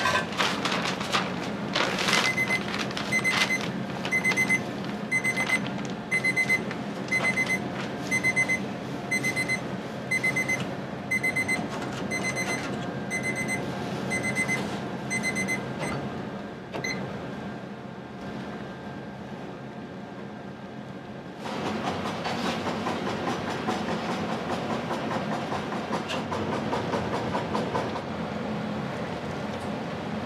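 An electronic kitchen alarm beeps over and over, short high beeps for about fourteen seconds, then stops, over the steady hum of a restaurant kitchen, with some clatter at the start. About two-thirds of the way in, a louder rushing, bubbling noise sets in from the big stockpot of dashi boiling with bonito flakes.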